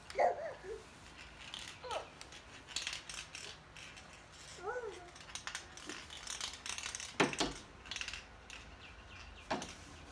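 A baby making a handful of short babbling vocal sounds, the loudest at the start and about seven seconds in, with light clicks and rattles of plastic toys being handled in between.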